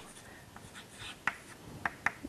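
Chalk writing on a blackboard: faint, with a few short scratches and taps of the chalk, about a second in and again near the end.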